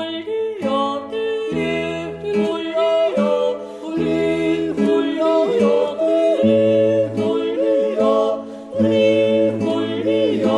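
Four-part Alpine folk vocal group singing a wordless yodel refrain in close harmony, the voices holding notes and stepping together from chord to chord.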